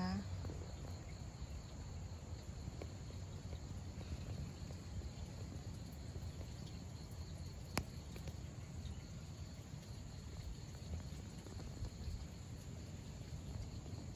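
Faint outdoor ambience: insects trilling steadily over a low, even rumble, with a single sharp click about eight seconds in.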